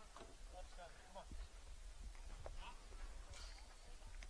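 Faint, distant voices: short scattered calls and chatter from players or onlookers, over a low steady rumble.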